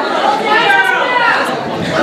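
Speech only: several people talking at once, audience members calling out replies.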